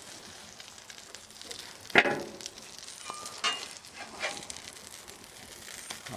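Egg-dipped sandwich frying in clarified butter on a steel flat-top griddle, a steady sizzle. A sharp metal clack about two seconds in, the loudest sound, and a few lighter knocks and scrapes after it as the grill press and spatula are handled on the griddle surface.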